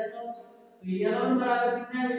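A man's voice drawn out in long, level, sing-song vowels, with a brief lull before it resumes just under a second in.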